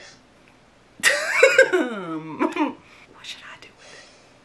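A woman's loud, drawn-out wordless cry about a second in, its pitch sliding down over under two seconds, followed by softer breathy sounds.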